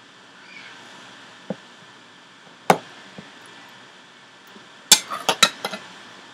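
Sharp clicks and taps from someone working the computer: single ones about one and a half and nearly three seconds in, then a quick run of five or six about five seconds in, over a faint steady hiss.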